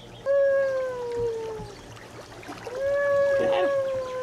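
A baby's two long, drawn-out vocal squeals, each held on one pitch for over a second. The first slides slowly down; the second holds level, then drops at its end.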